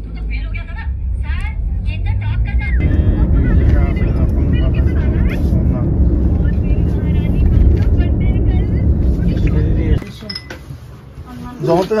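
Steady low road and engine rumble inside a moving vehicle on a highway, with faint voices over it. The rumble grows louder about three seconds in and cuts off sharply about two seconds before the end, leaving quieter room sound with a voice.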